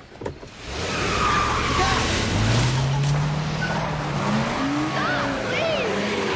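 A car pulling away hard: loud tyre noise with the engine revving, its pitch rising over a few seconds, and tyre squeals; voices shout over it near the end.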